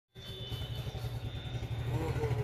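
An engine idling: a low, steady rumble with a quick, even pulse.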